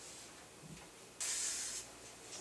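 A short swish, about a second in and lasting about half a second, as a framed glass swing shower door is swung closed.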